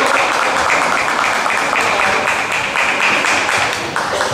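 Spectators applauding with dense, steady clapping that begins to fade near the end, acknowledging a point just scored in a kendo bout.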